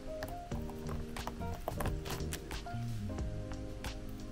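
Background music with steady tones, over irregular sharp clicks and crackles from a stencil being peeled off a wet-painted canvas.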